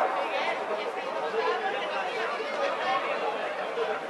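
Several voices talking and calling out over one another: players and spectators at an amateur football match.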